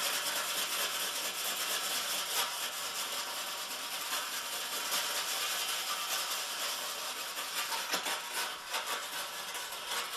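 Wet pumice stick scrubbed hard over a ceramic-finish gas stovetop in quick back-and-forth strokes, a continuous gritty scraping. The abrasive is grinding off baked-on stains; it doesn't sound good but does the finish no harm.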